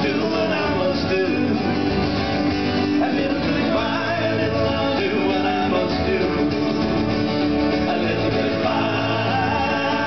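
Live folk band: strummed acoustic guitars and electric bass with men singing together.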